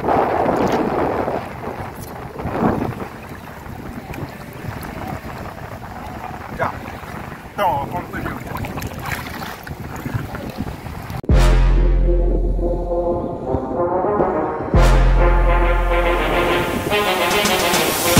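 Wind on the microphone and sea water, with a few faint voices. About eleven seconds in, upbeat background music with a heavy bass beat starts suddenly and stays loud.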